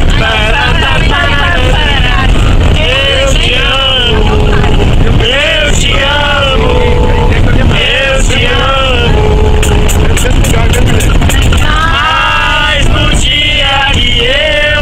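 A group of people singing a song together, with long held notes, over the steady low rumble of a moving bus. A quick run of clicks comes about ten seconds in.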